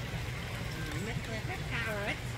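Indistinct high-pitched voices, a child's, talking in the second half over a steady low rumble.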